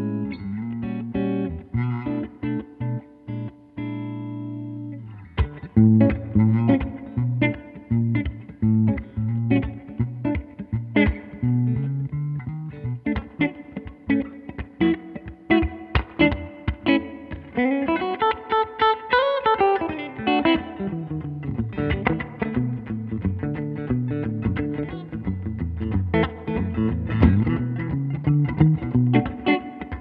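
Guild Surfliner HH solidbody electric guitar with two humbuckers, played clean through a 1964 Fender Vibroverb amp. A chord rings out and decays over about five seconds, then single notes and chords are picked in quick succession, with a fast run up and back down just past the middle.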